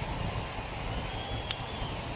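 Ballpark crowd murmur from a baseball broadcast, with one sharp crack of the bat on the ball about a second and a half in.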